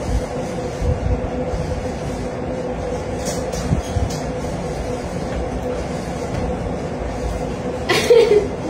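A steady machine hum: a low rumble with one constant mid-pitched tone, overlaid by a few soft thumps.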